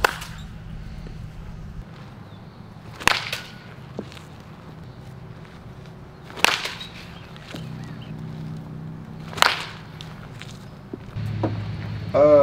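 Baseball bat striking pitched balls in batting practice: four sharp cracks about three seconds apart.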